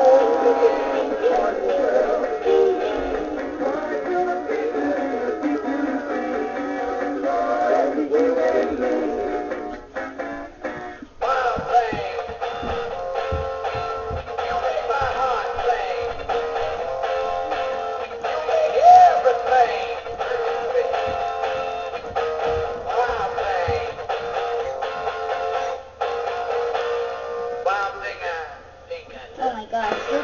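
Animatronic singing fish toy playing a song through its small built-in speaker, thin and without bass. The song stops about ten seconds in, and another song starts a second later.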